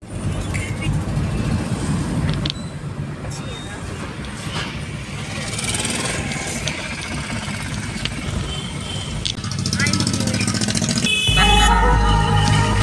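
City traffic and road noise heard from inside a moving car, with motorcycles passing and a short horn toot about three seconds in. About eleven seconds in, music with a heavy bass starts abruptly.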